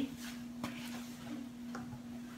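Quiet room with a steady low hum and a couple of faint light clicks from handling food and wrappers at the table.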